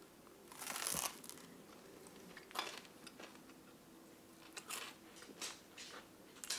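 A person biting into crunchy toast, with one louder crunch just under a second in, then chewing it with scattered quiet crunches.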